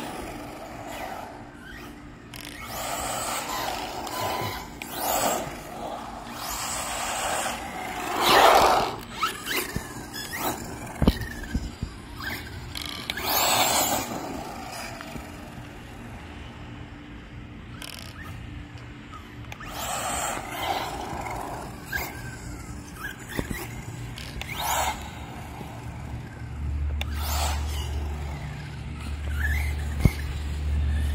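Electric RC monster truck running on a 2S battery on asphalt: its motor whines and its tyres squeal and scrape in repeated bursts as it accelerates and turns, loudest about a third and halfway through.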